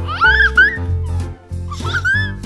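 Background music with a regular bass line, over which an animal gives two short, high calls about a second and a half apart, each gliding up and then down in pitch; the first call is the loudest sound.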